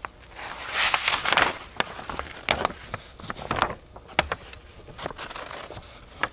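Fine black sand ore being stirred and tumbled in a container: gritty scraping and rustling with many sharp grainy clicks, loudest for about a second near the start, then in uneven bursts.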